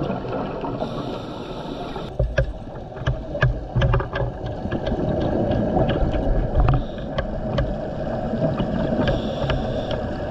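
Underwater sound picked up through a dive camera's housing: a steady low water rumble, with loud low bursts now and then and scattered sharp clicks. The sound changes abruptly about two seconds in.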